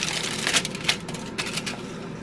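Crinkled aluminium foil rustling and hardened chocolate-covered almonds clicking against it and each other as a hand sweeps through them: a quick run of small clicks that thins out toward the end.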